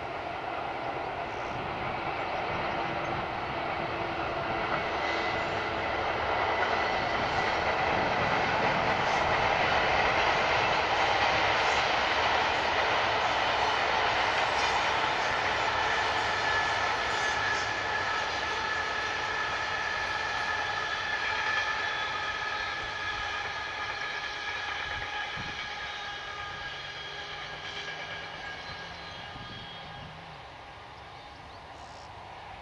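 Freightliner Class 66 diesel locomotive, its two-stroke EMD V12 working under power, hauling a train of freight wagons past. The engine and wagon rumble build to a peak about ten seconds in, then fade slowly as the train draws away.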